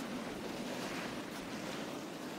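Steady hiss of small waves washing on a sandy beach in a light breeze.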